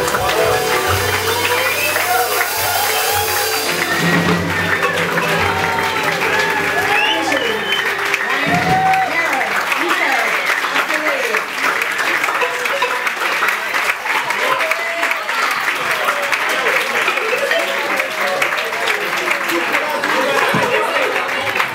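Audience applauding and cheering with lively crowd voices as a live band number ends; the band's last sustained low notes fade out in the first few seconds.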